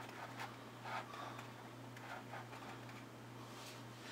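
Faint rustle of pleated paper as hands spread its accordion folds open, a couple of soft crinkles near the start, over a low steady hum.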